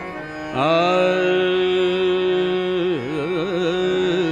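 Marathi devotional song: after a brief lull, a melodic line slides up to a long held note about half a second in, then breaks into quick wavering ornaments near the end.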